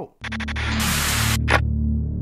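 Electronic channel intro sting: a deep, steady drone starts suddenly, overlaid with bursts of static-like noise and a brief swish about a second and a half in.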